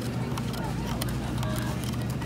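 Store ambience: a steady low hum with faint background voices and a few light clicks.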